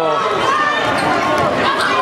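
A basketball dribbled on a hardwood gym floor, with voices carrying around the gym.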